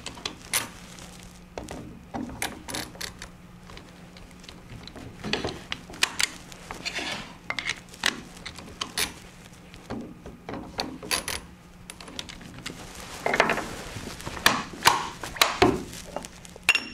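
Irregular clicks and clacks from a plastic model of a quick jaw-change lathe chuck as its jaws are worked with a T-handle wrench and reversed. The knocks come scattered throughout and bunch together near the end, over a faint steady low hum.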